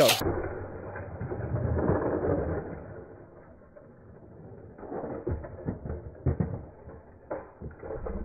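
Die-cast toy cars fired from a Hot Wheels launcher and rolling fast along plastic track, a dull, muffled rumble loudest in the first couple of seconds. Scattered light clicks and clatters follow as the cars run through the corkscrew loops and come off the end of the track.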